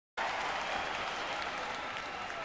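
Large concert audience applauding and cheering, a dense steady roar that cuts in abruptly just after the start.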